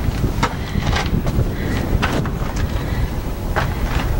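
Steady low rumble of wind buffeting the camera microphone, with a few scattered knocks of footsteps on stone.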